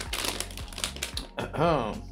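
Plastic candy bag crinkling and crackling in quick irregular clicks as it is handled and pulled open at the top. A short vocal hum comes near the end.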